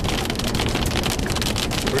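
Rain and flying debris striking the windshield and body of an armored storm-chasing vehicle near a tornado, heard from inside the cabin: a dense run of rapid ticks over steady wind noise and a low rumble.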